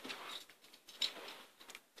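Faint rustles and short scraping clicks of football trading cards being slid apart and flicked through in the hands, a few separate strokes, one about a second in.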